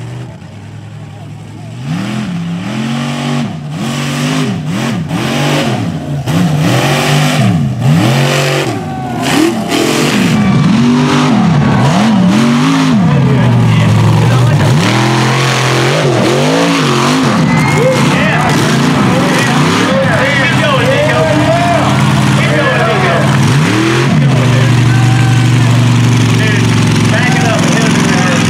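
A mega mud truck's engine revving hard again and again, its pitch rising and falling in quick sweeps. It gets louder over the first ten seconds and then stays loud, with a couple of longer steady pulls.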